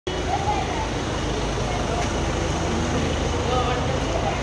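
Street noise: several people talking at once over a steady low rumble of vehicle engines.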